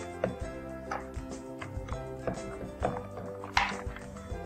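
Background music, with a few irregular light plastic clicks as small robot-kit spacers and adapter joints are snapped into the plastic controller housing.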